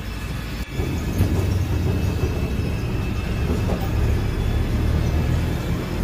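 City bus in motion, heard from inside the passenger cabin: a loud, steady low rumble of engine and road noise.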